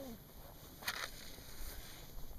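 A match struck once about a second in, a single brief burst against faint background.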